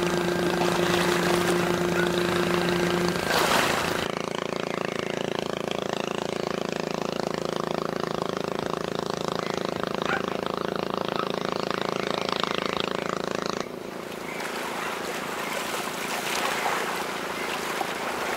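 A small motorboat's engine running at a steady pitch as it passes. After about four seconds it changes abruptly to another steady engine drone, which stops about two-thirds of the way through. That leaves a rush of water and wind from a ship's bow wave.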